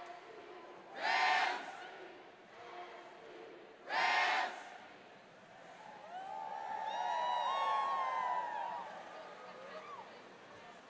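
A large crowd of students shouting together: two short, loud shouts in unison about three seconds apart, then a longer swell of many voices cheering and whooping that peaks around two-thirds of the way through and fades near the end.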